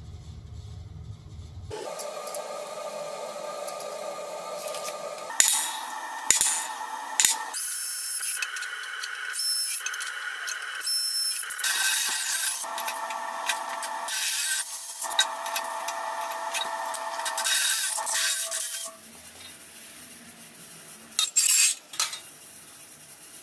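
Power drill boring into the side of a steel coupling nut held in a vise, the bit cutting with a grinding scrape and thin high whine; it stops a few seconds before the end, followed by a couple of sharp metallic clatters.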